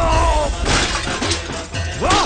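Film fight sound effects: a body crashing into an oil drum and debris with a loud smash about two-thirds of a second in, a short falling cry at the start, over dramatic background music.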